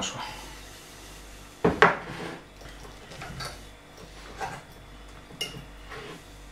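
Metal fork clinking and scraping against a ceramic plate while food is picked up: two sharp clinks about two seconds in, then a few lighter taps.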